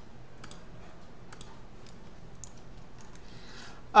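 A few faint, scattered clicks from a computer mouse and keyboard.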